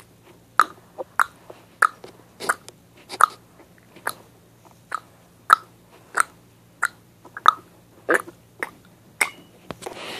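A string of short, sharp mouth clicks made by a child, about a dozen and a half at uneven spacing, roughly two a second.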